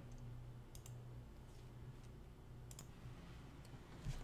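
A few faint computer mouse clicks, mostly in quick pairs, over a low steady hum.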